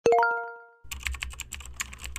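An intro sound effect: a quick rising chime of about four notes rings out, then a fast run of about ten computer-keyboard keystrokes as text is typed into a search bar.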